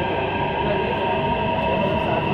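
Delhi Metro train running past an elevated station platform, heard from inside the coach: a steady rumble with several high steady tones held at one pitch.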